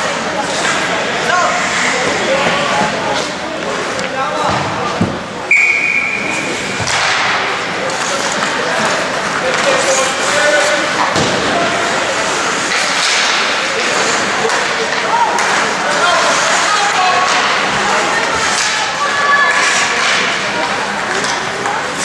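Sounds of an ice hockey game in an indoor rink: scattered voices of spectators and players over a steady din, with repeated thuds and slams of the puck, sticks and players against the boards. About five and a half seconds in, a short high whistle blast.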